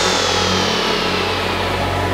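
Psychedelic trance breakdown with no drums: a sustained low synth drone under one synth tone that slides slowly down in pitch while the treble fades away.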